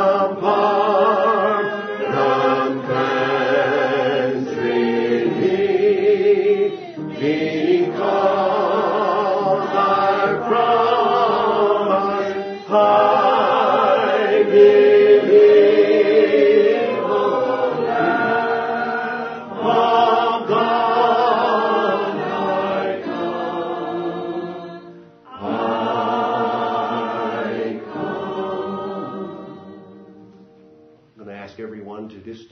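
Voices singing a slow hymn in long held phrases, with short breaks between phrases every five or six seconds.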